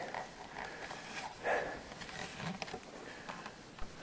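Quiet handling noise from a handheld camera: soft rustles and a few light clicks, with a faint breathy sound about a second and a half in.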